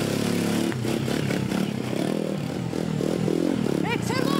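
Motorcycle engine pulling away and riding off, its pitch rising and falling with the throttle.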